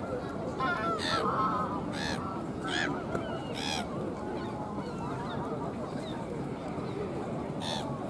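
Canada geese honking: four short honks in the first few seconds and one more near the end, over a steady murmur of distant voices.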